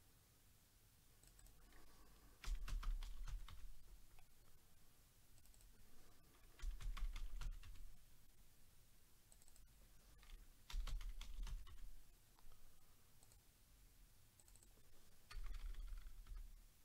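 Computer keyboard being typed on in four short bursts of rapid keystrokes, each about a second long, a few seconds apart.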